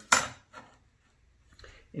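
A metal square set down on a plywood template with one sharp clink just after the start, then a couple of faint taps as it is positioned.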